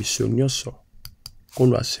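A man's speaking voice, with a short pause about a second in that holds a few quick, sharp clicks.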